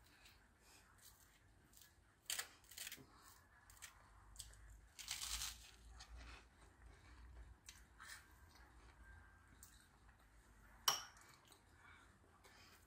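Faint crunching of a bite of toast with mashed avocado on it, and chewing, with a few short crackly scrapes. A single sharp click comes near the end.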